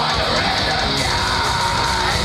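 Live metal band playing loud: distorted electric guitars and drums under a yelled vocal.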